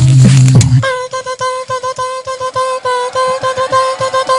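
Beatboxed vocal loops from a loop machine: a loud, low droning bass loop cuts off suddenly about a second in, and a thin, steady single-note vocal sound takes over, pulsing in a fast, even rhythm as the next loop.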